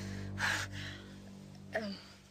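A woman's gasping breath in, about half a second in, over a low sustained music underscore that fades out near the end, just before a woman says "um".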